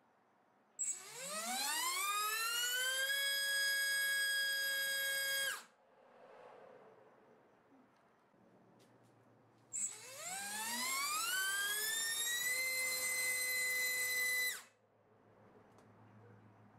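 RCX NK2204-2950KV brushless motor on a thrust stand on 4S, run twice with 4-inch props: a DYS 4040 three-blade, then a DAL Q4040 four-blade. Each run starts with a short click and spins up in a rising whine over about two seconds. It then holds a steady high whine at full throttle before cutting off suddenly.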